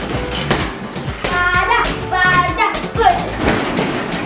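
Children's voices calling out over steady background music. Light knocks of play balls being moved around in a mesh play pen come through now and then.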